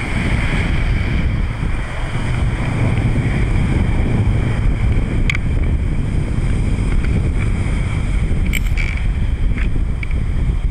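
Wind buffeting the microphone as a steady low rumble, with a couple of brief clicks about five and eight and a half seconds in.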